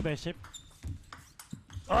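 Table tennis ball being struck by rackets and bouncing on the table in a rally: a series of sharp clicks, the first and loudest right at the start.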